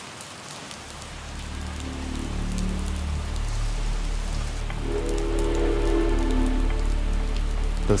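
Steady rain falling, under soft background music whose low, sustained notes swell in and grow louder over the first few seconds.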